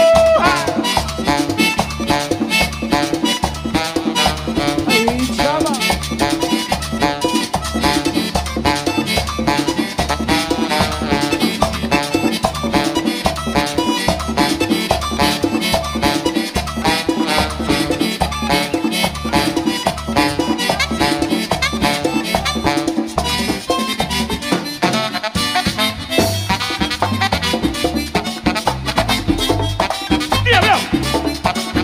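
Live merengue típico band playing an instrumental passage, with the button accordion leading over tambora, congas, bass guitar and saxophone on a steady, driving beat.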